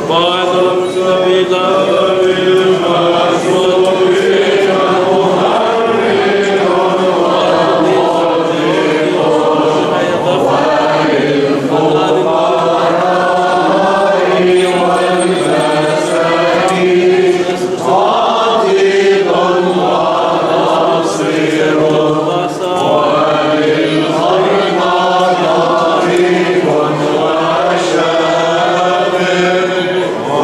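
Male voices singing Byzantine chant in an Orthodox liturgy, a slowly winding melody over a steady low held note.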